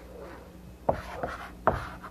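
Chalk writing on a chalkboard: faint scraping, then a few sharp chalk taps in the second half as letters are written.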